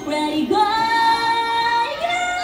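A woman singing into a microphone over backing music, stepping up from a low note to one long held high note from about half a second in until near the end.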